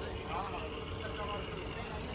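Faint voices of people talking in the background over a steady low rumble, with a faint steady hum.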